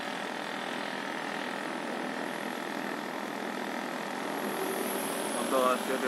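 Steady engine and road noise from a vehicle driving slowly along a city street, with traffic around it.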